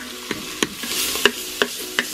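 Onions, sausages and diced prosciutto sizzling in butter in an Instant Pot's stainless steel inner pot on the high sauté setting, while a wooden spoon stirs them, knocking against the pot several times.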